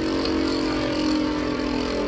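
Two Beyblade Burst spinning tops whirring steadily in a plastic stadium, a continuous even hum of their spin on the stadium floor.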